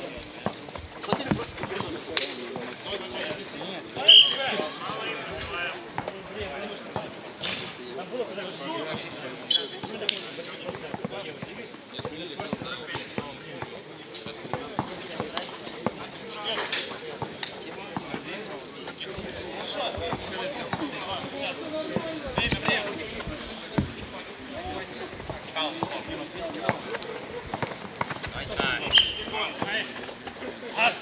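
A basketball bouncing on a court during a streetball game, in irregular sharp knocks, the loudest about four seconds in, over a steady background of voices.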